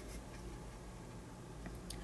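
Quiet room tone with a steady low hum, and a couple of faint small clicks near the end as a LaserDisc jacket is handled.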